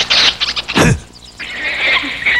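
Shrill yells and cries of kung fu fighters, with a fast falling swish a little before one second in.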